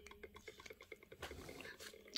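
Faint, irregular small clicks and taps of plastic as a plastic pipette and a small plastic measuring cup are handled.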